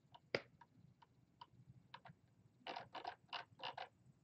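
Faint clicks of a computer mouse: a few scattered clicks, then a quick run of about half a dozen scroll-wheel ticks near the end as a web page is scrolled.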